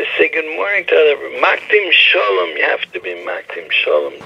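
Speech only: a man talking continuously, with no other sound standing out.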